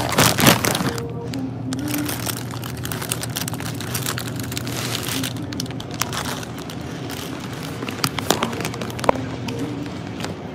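Background music with a few soft, slow notes, under constant rustling, crackling and knocking handling noise; a loud crackling burst comes about half a second in.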